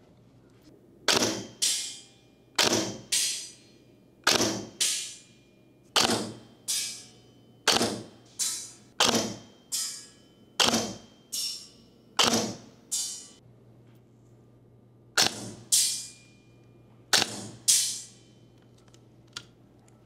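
Silverback MDR-X Micron airsoft electric rifle (AEG) firing about ten single shots of 0.3 g BBs, roughly one every one and a half seconds, with a pause near two-thirds of the way through. Each sharp shot is followed about half a second later by a second crack, the BB hitting the target 30 metres away.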